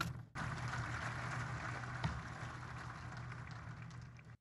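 Audience applauding, a dense, steady patter of many hands that eases off slightly toward the end.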